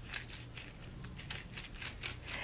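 A lemon half being squeezed by hand with a small handheld juicing gadget: faint squishing and crushing, with a few soft clicks, as juice runs into a glass bowl.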